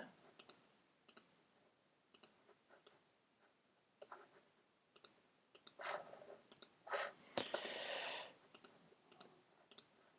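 Faint, scattered computer mouse clicks, one every second or so, with a longer soft noise about seven to eight seconds in.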